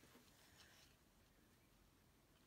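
Near silence: room tone, with a few very faint small sounds in the first second.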